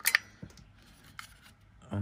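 Hard plastic toy housing handled and turned over in the hands: a couple of sharp clicks right at the start, then a few faint taps.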